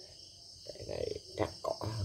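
Crickets chirping steadily in the background as a continuous high-pitched trill, with a voice murmuring softly in the second half.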